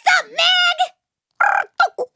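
High-pitched, squeaky gibberish chatter of a cartoon toy-monkey voice: warbling, wordless babble in short runs, with a brief pause a little under a second in.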